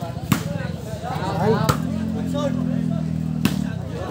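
Three sharp knocks of a ball being kicked during a rally, about a second and a half apart, over crowd chatter. A low steady drone joins in the middle and stops near the end.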